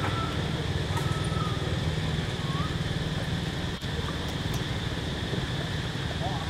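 Outdoor ambience: a steady low rumble with a constant high drone above it, and a few short, thin whistled calls in the first half.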